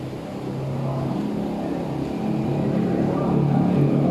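A man's voice chanting in long held notes that step in pitch and grow louder, carried through a mosque hall.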